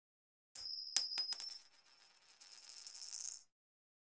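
A high, bright metallic ringing is struck about half a second in, then hit by a run of quick clicks and fades within about a second. A fainter high rattle then builds up and cuts off suddenly.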